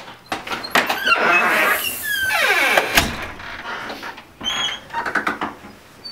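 A house's front door being opened and shut: knocks and a long scraping, squeaky stretch, then a sharp click about three seconds in, followed by lighter clicks and bumps.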